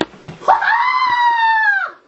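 A boy's high, sustained scream, starting about half a second in, held for about a second and a half with a slight fall in pitch, then cut off sharply. A short knock comes right at the start.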